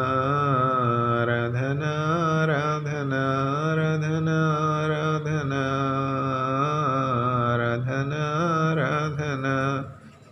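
A man singing a slow worship song unaccompanied, in long held notes with gentle bends of pitch; the singing stops abruptly just before the end.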